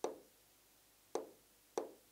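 Three sharp taps on the glass of a large touchscreen display, the first at the start, then two more closer together about a second and a second and a half later, as on-screen pen settings are being picked.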